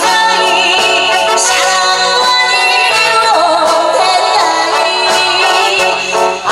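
A woman singing live into a handheld microphone over loud backing music, holding long notes with vibrato.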